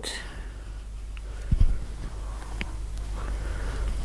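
Quiet handling of fabric and straight pins on a padded ironing board: a dull thump about one and a half seconds in and a couple of faint ticks, over a steady low hum.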